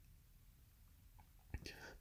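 Near silence: room tone in a pause between speech, with a small mouth click and a faint breath near the end.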